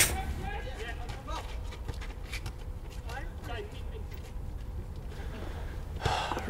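Faint, distant voices calling out a few times in the first few seconds, over a low steady rumble.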